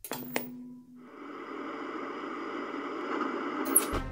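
An old picture-tube TV switching off with a sharp click and a short steady tone. About a second in, a steady drone with faint high tones begins and slowly swells.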